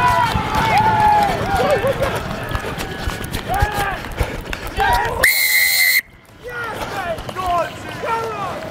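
Shouting voices as a runner breaks clear, then about five seconds in a single long blast of a referee's whistle, blown to award the try. The sound cuts off sharply just after the whistle.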